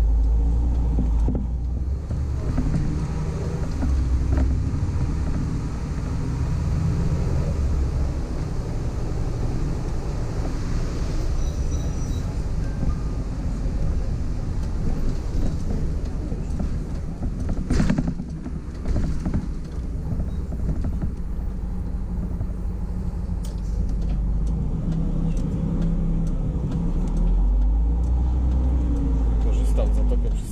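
Diesel engine of an articulated DAB city bus running under way, heard from the driver's cab, its note rising and falling with the throttle. A single sharp noise cuts in about two-thirds of the way through.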